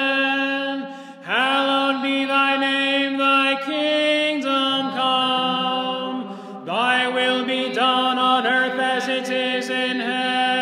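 Unaccompanied Byzantine-rite liturgical chant sung by several voices on long held notes, with brief breaths about a second in and near seven seconds.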